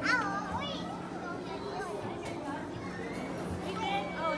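Crowd of visitors chattering in a large hall, with a child's high-pitched voice calling out in the first second and again near the end, over a steady low hum.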